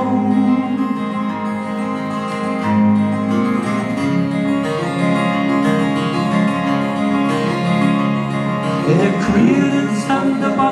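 Live folk song from a duo: two acoustic guitars strummed and picked under male singing with long held notes.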